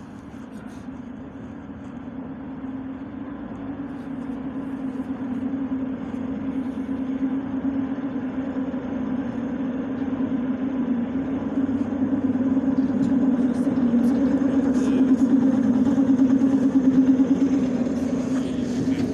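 Six-car ER9E electric multiple unit pulling into a platform: a steady hum over running noise, growing louder as the train approaches and draws alongside.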